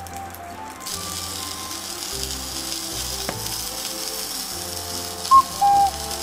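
Fried tofu pouches sizzling gently in oil in a frying pan over low heat, a steady hiss that sets in about a second in, under soft background music. Near the end two short, loud, clear chime tones sound one after the other.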